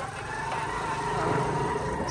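Motorcycle engine running at steady speed while riding, a low rumble that grows slightly louder, with a held, level whine over it.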